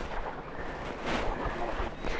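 Wind rumbling on the microphone over faint outdoor background noise.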